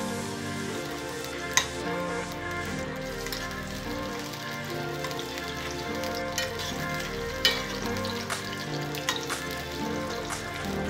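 Green chillies sizzling as they fry in hot oil in an aluminium kadai, stirred with a steel spoon that clicks against the pan a few times, most sharply about one and a half seconds in.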